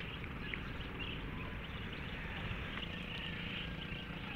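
Steady outdoor background noise, with wind rumbling low on the microphone and a few faint, short chirps.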